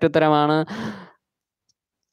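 A man's voice trails off the end of a word into a breathy sigh that fades out a second in.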